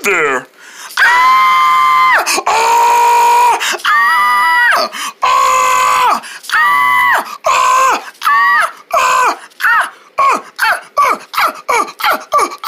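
A person screaming in a high voice: several long, held screams, then a quick run of short cries from about nine seconds in.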